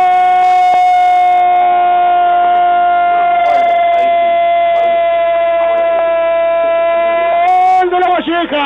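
A radio football commentator's drawn-out goal cry, "goooool", one unbroken shout held on a steady pitch for about eight seconds, sagging slowly and lifting briefly just before it ends. It comes through the narrow sound of an AM radio broadcast.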